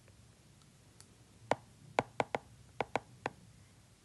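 Stylus tip tapping and clicking on a tablet's glass screen while writing by hand: about seven short, sharp taps in quick succession over a couple of seconds, starting about a second and a half in.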